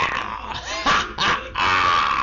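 A man's voice making loud growling, animal-like noises in several short bursts, the last one held longer near the end.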